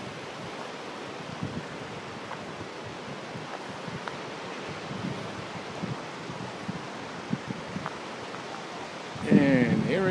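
Steady outdoor rush of wind and distant ocean surf, with light wind buffeting on the microphone. A man's voice starts near the end.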